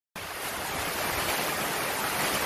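Heavy downpour: a steady, dense hiss of rain falling on the corrugated roof overhead and on the ground around.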